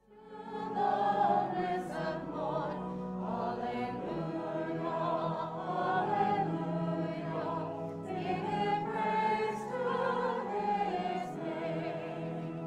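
Church choir and congregation singing a hymn with pipe-organ-style sustained accompaniment, starting out of a brief hush right at the beginning and carrying on at a steady level.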